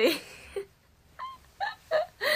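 A young woman laughing softly: a breathy laugh at the start, then after a short pause three brief voiced sounds.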